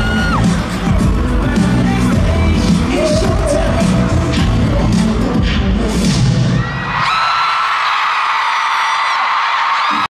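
Loud live pop music with heavy bass and drum hits, which stops about seven seconds in. A crowd of fans then screams and cheers, high-pitched and sustained.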